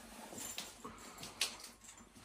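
Faint sounds from a pet animal, with a sharp click about one and a half seconds in.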